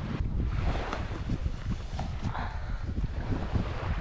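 Wind buffeting the camera's microphone: an uneven low rumble with flickering gusts.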